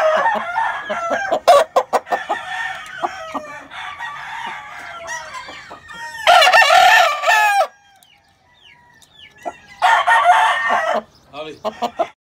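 Gamefowl roosters crowing: the tail of one crow at the start, a loud crow about six seconds in and another about ten seconds in, with quieter clucking and calls between.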